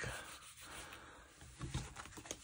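Faint rubbing of fingers on paper as a sticker is pressed down onto a planner page.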